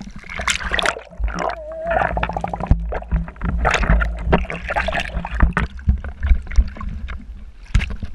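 Sea water sloshing and splashing against an action camera held at the surface, with muffled gurgling and bubbling as the camera dips under and comes back up. Irregular sharp splashes over a steady low rumble of water on the housing.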